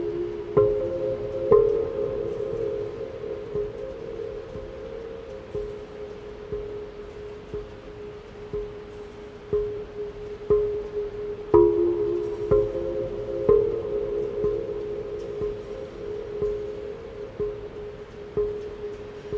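Large Korean earthenware onggi jars struck with a mallet. Each stroke is a sharp hit followed by a low, ringing pitched note. The strokes come about once a second, the notes overlap and ring on in the reverberation of a steel-walled dome, and they are loudest near the start and again about two-thirds of the way through.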